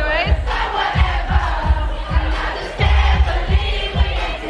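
Loud pop dance music over a club sound system with a steady heavy kick-drum beat, and a crowd singing and shouting along.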